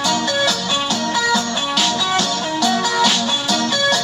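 Live band music with strummed guitars playing through the built-in speaker of an ACE 32-inch LED smart TV.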